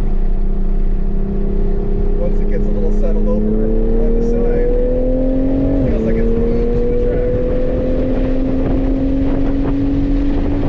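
Engine of a 3.0-litre turbocharged inline-six MK5 Toyota Supra under way, heard from inside the cabin. It holds a steady note, then pulls with rising pitch until an automatic upshift drops the revs just before the halfway point, and climbs again after the shift.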